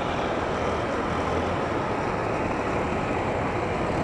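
Motorcycle engine running steadily during a wheelie, mixed with wind and road noise on a moving microphone.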